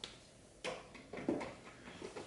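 Felt-tip marker handled and drawn on paper: a few short, soft scratches and clicks.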